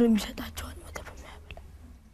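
Speech: a voice finishes a word, then soft, quiet talk fades away over a low steady hum.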